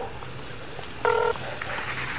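One short electronic beep from an LG cell phone about a second in, while a call is being placed, over a faint low rumble.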